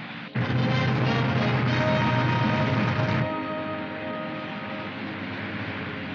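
Orchestral film score breaking in suddenly and loud, holding sustained chords for about three seconds before dropping to softer held notes, over the steady drone of aircraft engines.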